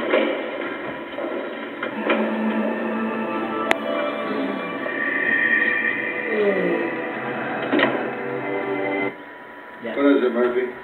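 A film soundtrack playing from a television and picked up through its speaker: music with sustained notes and some background voices, falling away about nine seconds in.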